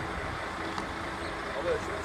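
Semi-trailer truck with a flatbed trailer moving slowly past, its engine giving a steady low rumble.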